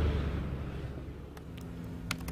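An SUV pulling away, its engine and road noise fading over about a second and a half, with a few faint clicks near the end.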